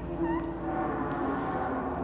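Contemporary chamber music with an electronic tape part: soft held low notes, with two short gliding chirps about a quarter second in.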